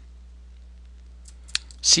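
A computer keyboard key struck once, sharply, about a second and a half in, with a few fainter clicks just before it, over a steady low electrical hum.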